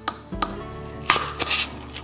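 Scissor point being pushed through a cardboard toilet paper tube: a few small clicks, then a short crunch of cardboard about a second in, over soft background music.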